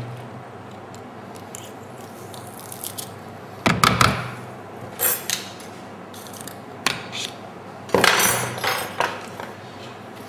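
A garlic press and other kitchen utensils being handled, giving a few knocks and clatters. The loudest come about four and eight seconds in, with lighter taps between them.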